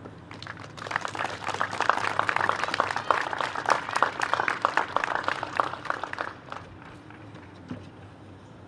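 Audience applauding: clapping that starts about a second in, holds for about five seconds and dies away.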